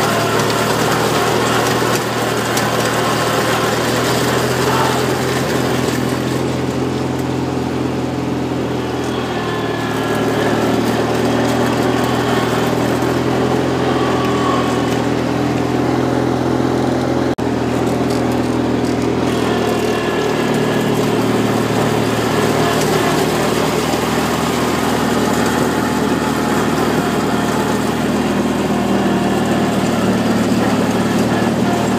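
Ride-on mower or garden tractor engine running steadily while grass is cut and blown into a collector hopper, with a brief break about halfway through.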